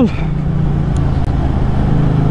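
Yamaha MT-07's 689 cc parallel-twin engine running at a steady cruising note while the bike rides along, with wind rushing over the microphone.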